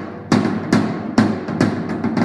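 Drum kit played with sticks: tom strikes about every half second, some in quick pairs, each ringing out. The toms are unmuffled, with the thinner resonant bottom head tuned tighter than the batter head.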